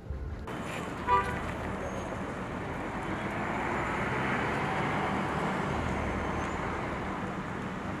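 Steady outdoor traffic noise with a short car horn toot about a second in.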